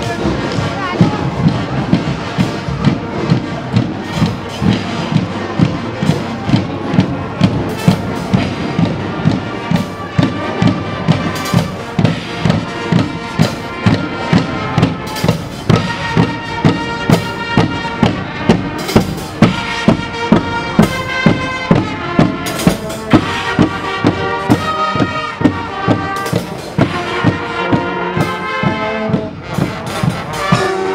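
A Guggenmusik carnival band marching past: bass and snare drums beat a steady march rhythm of about two beats a second, and from about halfway trumpets, sousaphone and other brass join in with loud chords.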